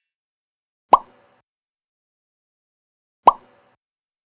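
Two short cartoon-style 'plop' pop sound effects, about two and a half seconds apart, each a quick downward drop in pitch, accompanying pop-up graphics in an animated intro.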